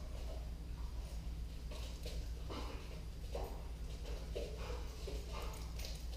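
Scattered footsteps and shuffles of a dog and a person moving on a rubber-matted floor, coming as irregular short bursts over a steady low hum.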